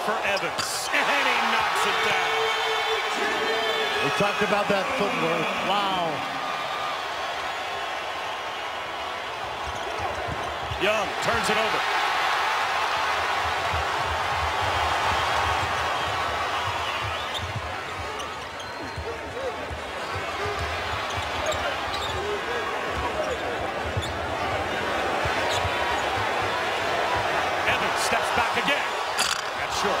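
Arena crowd noise during live basketball play, with the ball bouncing on the hardwood court. The crowd grows louder about eleven seconds in as the home team scores.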